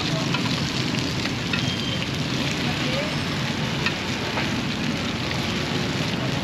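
Steady hiss and scattered small crackles of a street cooking stall: a charcoal fire under cast pans of num kruok (Khmer coconut rice cakes) as they cook.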